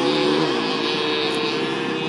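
Go-kart engine running, its note dropping about half a second in, then holding steady.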